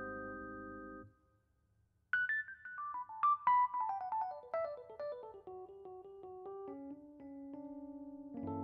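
Jazz piano: a held chord rings and stops abruptly about a second in. After a short gap, a fast run of single notes falls from the high register to the middle, then slows into a few held notes near the end.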